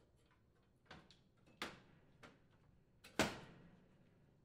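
Four light knocks and clicks as the range's glass-ceramic main top assembly is handled and set back down onto the cabinet frame. The last knock, about three seconds in, is the loudest and rings briefly.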